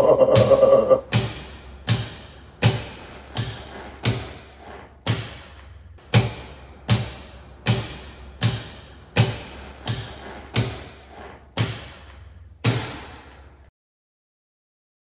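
Large-paddle rocker wall switch (Schneider Electric X Series switch with XD plate) being clicked over and over, a sharp click with a short ring about every 0.7 s, until it cuts off near the end.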